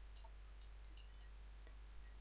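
Near silence: steady microphone hiss and a constant low hum, with a few faint scattered ticks from computer keyboard typing.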